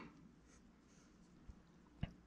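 Near silence, with the faint scrape of a small sculpting tool on plasticine right at the start and a soft tap about one and a half seconds in.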